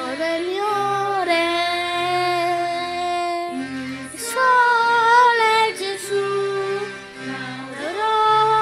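Italian Christian song sung by a high solo voice over instrumental backing, with long held notes and a steady bass line underneath.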